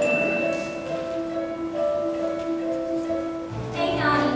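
A theatre pit band plays the instrumental introduction to a show song: held chords with a bell-like tone, changing chord about midway, and low bass notes entering near the end.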